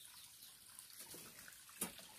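Faint trickle of lake overflow water running through the Delius tunnel's overflow shaft beneath steel grating; it runs because the lake is high after much rain. A brief voice-like sound comes near the end.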